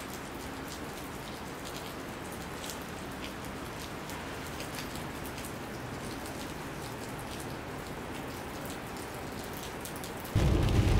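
Pouring rain falling steadily: a dense, even hiss with many fine ticks of single drops.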